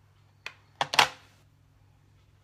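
Three short sharp clicks about half a second apart, the last one loudest with a brief ring after it, like small objects being knocked or set down.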